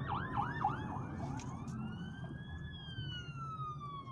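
Fire truck siren heard from inside a car. It starts with a fast yelp, about five cycles a second, then about a second in switches to a slow wail that rises and then falls away.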